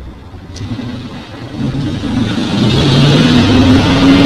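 A motor vehicle engine running close by, growing louder about a second and a half in and then holding steady.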